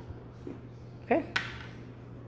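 A single sharp tap a little past halfway: a small game piece knocking on a cardboard game board.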